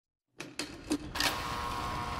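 After a moment of silence, a few sharp electronic ticks and clicks come a few tenths of a second apart. They settle about a second in into a steady electronic drone with a faint held tone, the sound bed of a TV viewer-advisory card.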